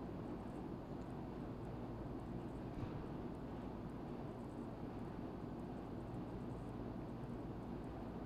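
Steady low background hum of room noise, with one faint tick about three seconds in.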